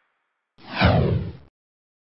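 A whoosh sound effect with a falling pitch sweep over a low rumble, starting about half a second in and lasting about a second.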